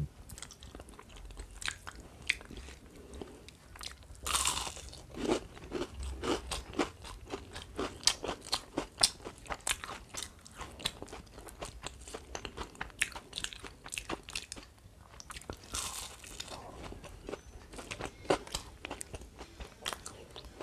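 Close-miked eating by hand: chewing and crunching of fried food, with many short sharp crunches throughout.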